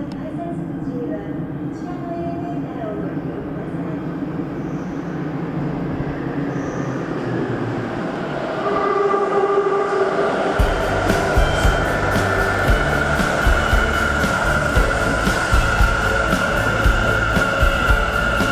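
Sendai Subway Tōzai Line 2000 series train arriving in the underground station. A rumble builds from about halfway, and from about ten seconds in the cars pass with regular heavy thumps and a steady whine.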